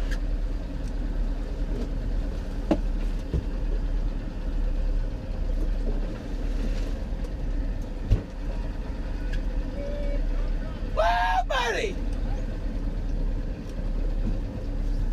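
Outboard motor running steadily at low speed, with a few short knocks on the boat.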